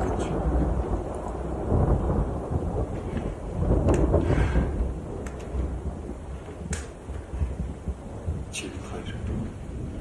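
Low rumbling thunder that swells about two seconds in and again, loudest, about four seconds in, then fades, with a few short sharp sounds later on.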